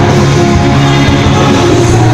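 Live rock band playing loudly: electric guitars and bass guitar.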